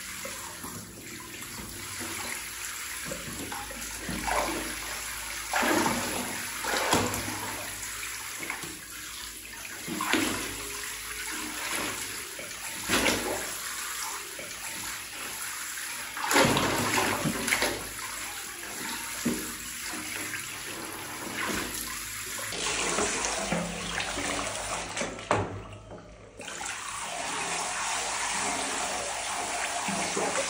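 Water from a handheld shower head running and spraying into a plastic baby bathtub full of water, with frequent short splashes as a baby monkey moves about in the bath. The running water drops away briefly a few seconds before the end, then carries on steadily.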